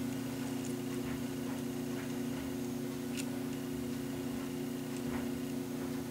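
A steady low hum, with a few faint ticks of small pliers working thin craft wire, one about three seconds in and another near the end.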